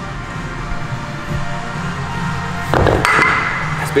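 Background music, with a clank about three seconds in as a pair of dumbbells is set down on the gym floor, followed by a short metallic ring.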